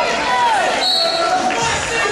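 Roller skate wheels squeaking on a polished gym floor, with short gliding squeals, over the chatter of a crowd in a large hall.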